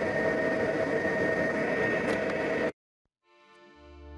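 Steady hiss and hum of a test bench with faint steady whining tones, cut off abruptly about two-thirds of the way in. After a brief silence, background music fades in near the end.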